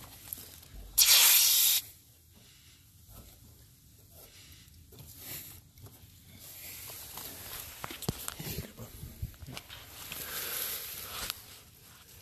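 Brief burst of hissing R407C refrigerant, about a second long, as the oil pump's hose fitting is threaded onto the air conditioner's pressurized low-side service port. Faint clicks from the fitting follow, then a second, softer hiss near the end.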